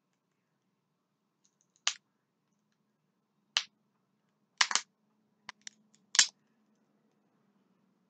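Hands working open a small bottle of ylang ylang essential oil: a handful of short, sharp clicks spaced irregularly, with quiet gaps between them.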